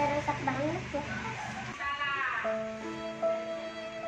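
A simple electronic tune of steady held notes starts about halfway through. Before it come short voice-like calls that rise and fall in pitch.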